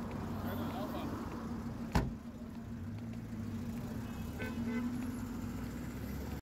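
Roadside street ambience: a steady low hum of vehicles, broken once about two seconds in by a single sharp knock.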